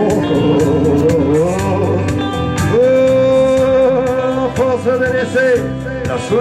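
Live band music in an instrumental break between sung lines: a harmonica played into the vocal microphone, with long held notes and bent notes over guitar backing.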